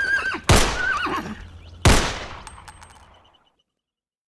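Two pistol shots about a second and a half apart, each with a long echoing decay. A wavering high-pitched cry is heard around the first shot.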